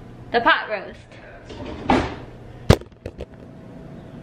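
A brief wordless vocal sound from a woman, then a single sharp knock followed by two lighter clicks, over a low steady hum.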